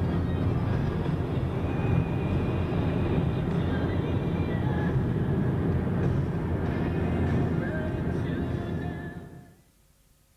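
Road and engine noise inside a moving car driving through a tunnel, with music playing over it. The sound fades away about nine seconds in.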